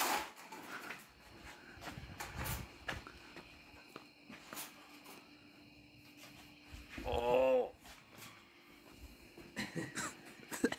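A short, strained, wavering groan about seven seconds in, as a man bears down by hand to cold-bend 3-inch PVC conduit. Around it are a few faint knocks from the pipe and bender stands.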